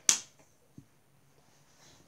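A sharp hand clap right at the start, finishing a quick double clap, dying away within half a second. A faint knock follows a little under a second in.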